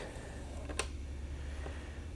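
Quiet pause: a low steady hum of room tone, with one faint click a little under a second in.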